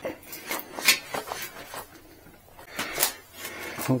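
Scattered light clicks and knocks of hands and a hex key handling the rear frame, rack and fender of a folding e-bike, about eight in four seconds.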